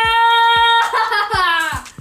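A child's long, drawn-out cheer of "yeah!", held on one pitch and then sliding down and fading out just before the end.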